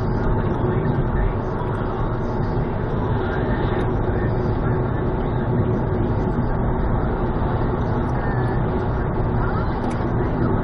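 Steady road and engine noise inside a moving car's cabin, tyres on the road and engine running at cruising speed, picked up by a dashcam.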